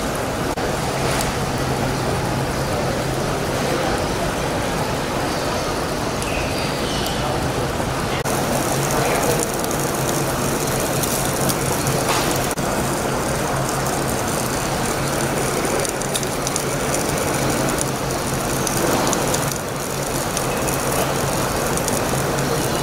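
Steady background din with a constant low hum and indistinct voices mixed in; no single event stands out.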